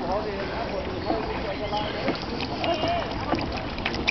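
Water sloshing and lapping against a canoe's hull, with faint murmured voices and a few small splashes or ticks near the end.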